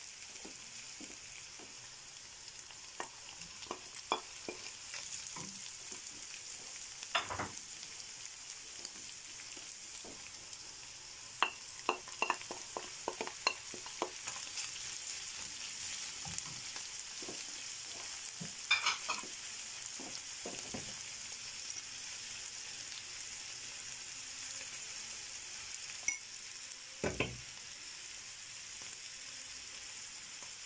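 Food sizzling steadily in a frying pan on a gas stove: diced potatoes, vegetables and pasta. Scattered clicks and knocks of a wooden spoon stirring against the pan come through the sizzle, bunched together about halfway through, with a heavier knock near the end.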